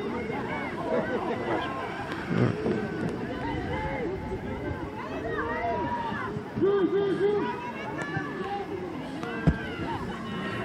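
Many overlapping voices of players and spectators shouting and calling across a rugby pitch, with no single clear speaker. About seven seconds in comes a loud burst of three quick repeated shouts. A single sharp thump follows near the end.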